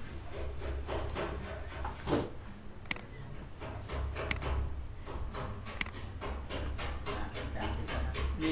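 Three sharp computer mouse clicks, about a second and a half apart, over a low steady hum.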